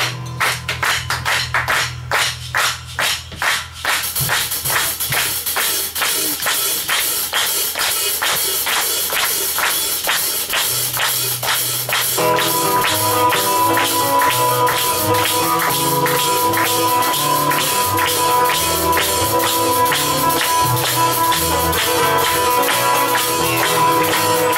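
Live band playing an instrumental Brazilian jazz tune. For the first few seconds a sparse hand-percussion pattern of shaker and tambourine-like strokes plays over a held bass note. Then the groove fills in steadily, and about halfway through long held melody notes come in over it.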